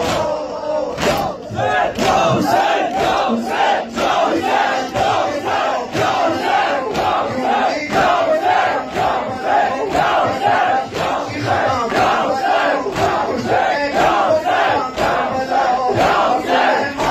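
A large crowd of men chanting together in rhythm while beating their bare chests with their hands in matam, the slaps landing about twice a second in unison.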